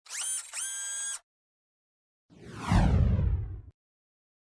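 Logo-intro sound effects. In the first second there are two short bright tones, each rising quickly into a held pitch. After a pause comes a falling swoosh over a deep rumble, the loudest sound, which cuts off sharply.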